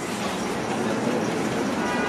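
Steady background noise of a large indoor concourse: an even rumble and hiss with no distinct events standing out.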